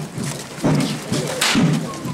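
Repeated dull thumps, about two a second, with a single sharp crack about one and a half seconds in.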